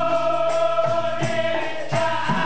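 Dikir barat chorus of men singing together, holding one long note, over a regular percussive beat.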